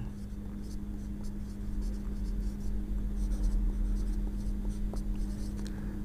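Marker pen writing on a whiteboard: a run of short, irregular scratchy strokes, heard over a steady low hum.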